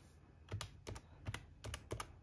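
Plastic keys of a desktop calculator being pressed one after another: a run of light, quick clicks starting about half a second in, as a subtraction is keyed in.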